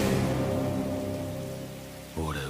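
Heavy rain cutting in suddenly and easing slightly, with low sustained music tones beneath.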